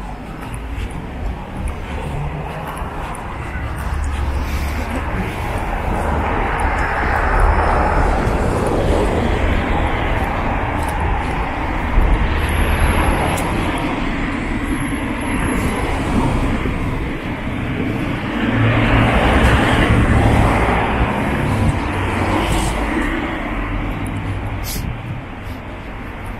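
City street traffic: cars passing close by on the road, the noise building to a peak a few seconds in and again later, over a steady low rumble.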